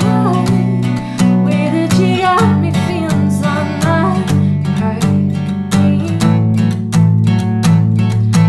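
Steel-string acoustic guitar strummed in a steady rhythm, changing chord about two seconds in, with a woman's voice singing a few wordless, drawn-out notes over it.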